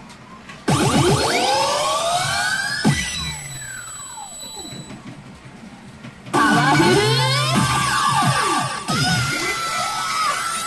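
Electronic music and sound effects from a SANKYO P Fever Powerful 2024 pachinko machine. Sweeping rising and falling electronic tones are cut by sudden loud bursts about a second in and again about six seconds in, with a quieter stretch between them.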